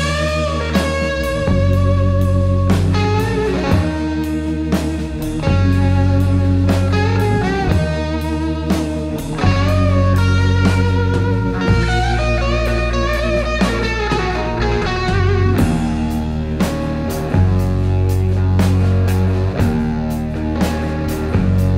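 A live rock band plays an instrumental passage: a lead electric guitar line with bent, wavering notes runs over electric bass and a drum kit keeping a steady beat.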